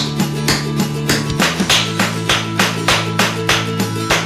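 Tap shoes' metal taps striking a wooden floor in a steady rhythm, about four taps a second, over background music with held chords that change about a second and a half in.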